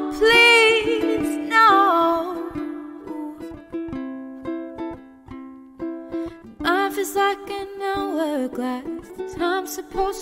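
A woman singing a wordless vocal line over a strummed acoustic string instrument, played live. The voice drops out for a few seconds in the middle, leaving only the strumming, then comes back near the end.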